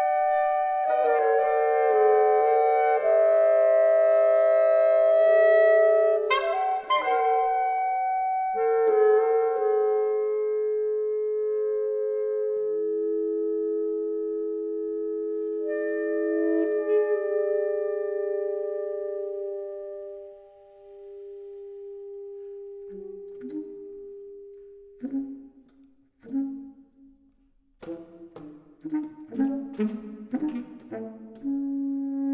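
Saxophone quartet (soprano, alto, tenor and baritone) playing microtonal contemporary music: layered sustained notes shift slowly against each other, with sharp accents about six and eight seconds in. The texture thins and fades around twenty seconds to one quiet held note, then gives way to short, detached notes near the end.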